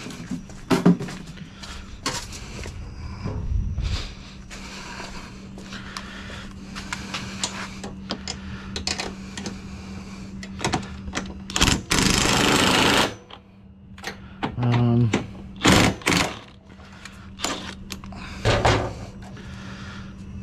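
Cordless impact wrench hammering a 17 mm bolt tight in one rattling burst of just over a second, a little past halfway through. Clicks and knocks of hand tools and hardware being handled come before and after, over a steady low hum.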